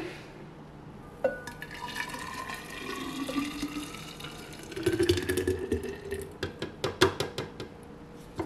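Green juice poured from a juicer jug into a glass carafe, the pouring tone rising steadily in pitch as the bottle fills. Near the end comes a quick run of sharp clicks as the pour tails off.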